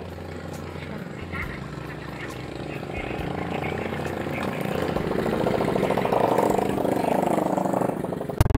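Faint voices over a steady engine drone that grows louder through the second half.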